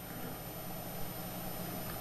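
Steady room noise: an even hiss with a low hum underneath, and a faint click about a second in.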